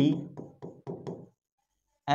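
A few light knocks of a pen tip on the glass of an interactive display panel while a word is written, following the tail of a man's spoken word.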